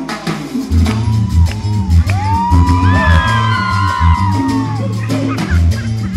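Live Latin band music on stage: a pulsing electric bass line and percussion come in under the keyboard about a second in. Through the middle, high sliding notes glide up and down above the band, with a short shout from the singer at the start.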